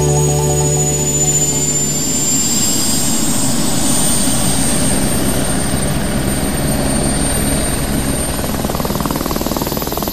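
Small remote-controlled multirotor drone's electric motors buzzing, with a thin high whine that rises slightly early on. Background music fades out during the first two seconds.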